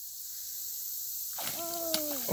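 A steady high hiss, then, from about a second and a half in, a woman's drawn-out exclamation falling in pitch as a fish strikes her line, with a sharp click just before the end.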